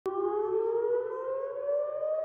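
Civil-defence air-raid siren sounding one slowly and steadily rising tone as it winds up, warning of an attack.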